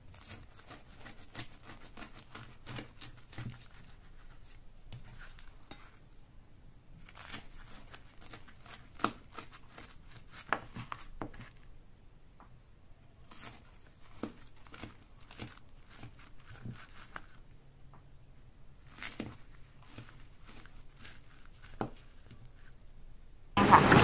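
Kitchen knife cutting through a crisp pan-fried dough pancake on a plastic cutting board: crackling, crunching cuts in several short bursts with pauses between. In the last moment it gives way to much louder street noise.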